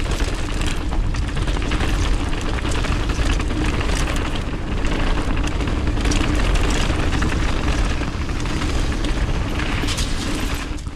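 Mountain bike ride noise on a bike-mounted or body-mounted action camera: steady low wind buffeting and rumble, with frequent clicks and rattles from the tyres and bike over the dirt and gravel trail.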